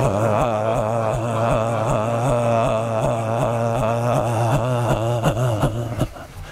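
A man's voice holding one low 'ah' tone on a steady pitch while his body bounces, so the sound wavers about four times a second: the voiced sound of a qigong shaking exercise, made to feel the vibration of the sound in the body. It stops suddenly at the end.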